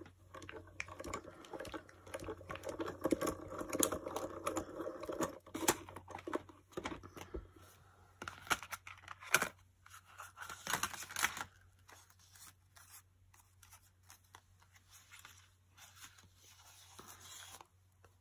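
A manual die-cutting machine being cranked, feeding the plates with a die and cardstock through in a rough, clicking run for the first five seconds or so. Then come sharp clicks and scrapes of plastic cutting plates being handled, and quieter paper rustling and tearing as the die-cut cardstock is freed from the die.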